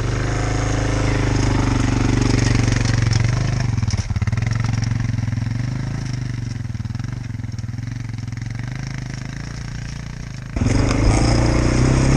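Dirt bike engine idling steadily, a Kymco quad's engine beside it, the combined engine sound slowly getting quieter. About ten and a half seconds in it switches abruptly to a louder engine running.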